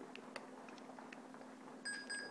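Dell Inspiron 8100 laptop booting Windows XP: a faint steady hum with scattered soft ticks as it runs through start-up. Near the end comes a short, high electronic beep.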